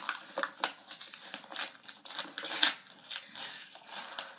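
Packaging being crinkled and torn open by hand: irregular crackling rustles and sharp snaps, the loudest about two and a half seconds in.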